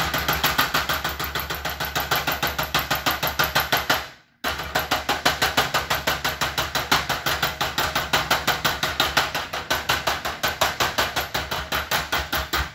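Fluorescent light fixture on a magnetic ballast: a steady mains hum with rapid, even clicking at about six a second as the tube keeps trying and failing to strike. The sound stops for a moment at about four seconds, then starts again. The owner judges that the tube's electrode has failed.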